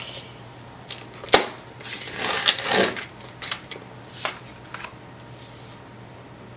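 Fiskars sliding-blade paper trimmer cutting white cardstock: a sharp click about a second in, then the scraping run of the blade through the card, followed by lighter taps and paper shuffling as the pieces are handled.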